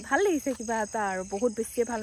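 Crickets trilling steadily at night, a continuous high-pitched hum, under a voice talking that is the loudest sound throughout.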